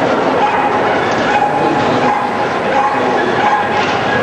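Dogs barking and yipping over the steady din of a crowded indoor show hall, with voices mixed in.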